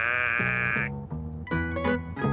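A loud, drawn-out, wobbling comic 'wow' voice sound, lasting about a second, over the end-credits music. The closing theme then carries on with short plucked keyboard notes.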